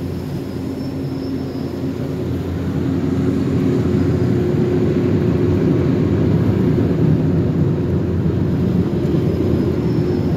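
Car wash tunnel machinery heard from inside a car, including the vintage pinwheel brushes spinning beside the car: a steady low roar that grows louder about three seconds in.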